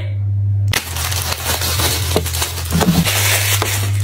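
Thin plastic produce bag crinkling and crackling as a bunch of bananas is handled and pulled out of it, starting under a second in, over a steady low hum.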